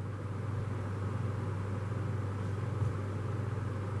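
Room background: a steady low hum with a faint even hiss, unchanging throughout.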